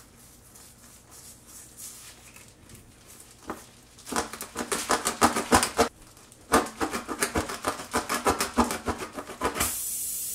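Tire plug kit rasp tool worked up and down in a nail puncture in the tire tread, scraping against the rubber in quick strokes, several a second. The strokes come in two runs, starting about four seconds in, with a brief pause between them. A steady hiss begins just before the end.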